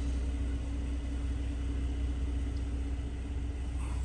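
A steady low rumble with a constant hum.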